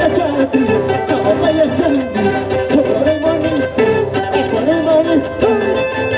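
Andean folk music for the qhaswa dance: quick plucked strings under a pitched melody that bends and glides, playing continuously.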